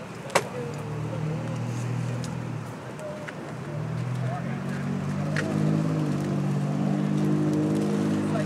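A motor vehicle engine running close by. Its steady low hum comes in about a second in, drops briefly, then returns louder from about four seconds in. A single sharp click sounds just after the start.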